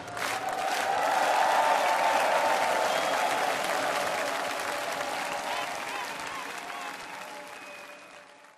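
Large studio audience applauding as a song finishes. The applause peaks about two seconds in, then slowly fades away.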